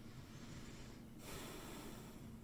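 A soft nasal breath, a sigh or exhale lasting about a second, starting a little past halfway through, over faint room tone.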